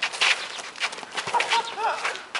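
Basketball players' footsteps and shoe scuffs on an outdoor concrete court, a quick run of short sharp strikes, with a brief voice call about a second and a half in.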